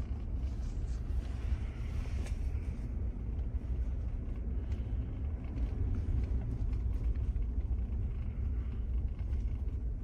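Steady low rumble of engine and tyres heard from inside the cabin of a Ford driving along a snow-covered road.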